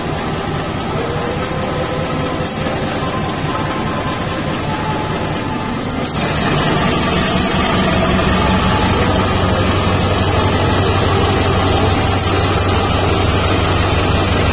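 Diesel-electric locomotive's engine running as it draws a passenger train slowly past. About six seconds in, the sound jumps louder and rougher as the locomotive comes level with the microphone, settling into a steady low engine drone.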